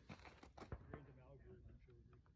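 Near silence, with faint distant voices and a few small clicks.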